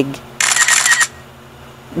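A camera-shutter sound effect: one short burst of hissy click noise about half a second in, lasting just over half a second, followed by quiet.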